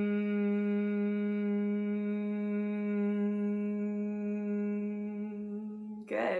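A woman humming one long, steady note with her lips closed, held on a single slow exhale and fading a little near the end before it stops.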